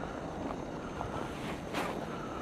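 Steady, low outdoor background noise with a few faint ticks and one brief swish near the end.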